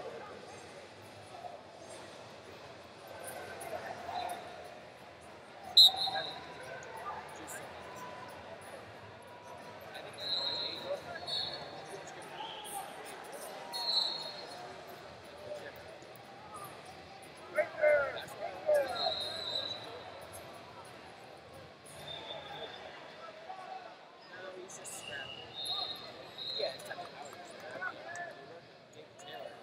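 Busy wrestling-arena ambience: indistinct shouting from coaches and spectators, with short high-pitched whistle blasts recurring from the many mats around the hall. A sharp impact comes about six seconds in, the loudest sound.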